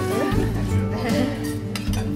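Serving spoon clinking against bowls and plates as food is dished up, over music and talk.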